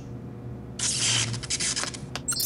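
A cartoon sound effect: a burst of static-like hiss from the translation collar, lasting about a second and starting most of a second in.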